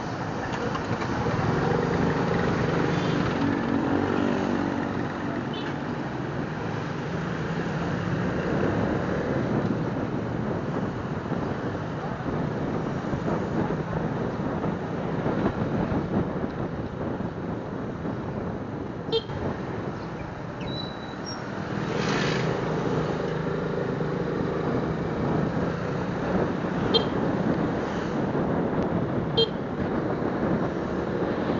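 Onboard sound of a Suzuki Smash underbone motorcycle riding in town traffic: steady wind rush on the microphone over the running small four-stroke single-cylinder engine. The engine comes up louder for a few seconds about a second in, and again about two-thirds of the way through.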